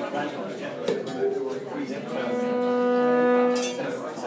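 A single long held note from a wind instrument, one steady pitch with many overtones, starting about two seconds in and cutting off just before the end. Before it comes a sharp knock about a second in, over a background of voices.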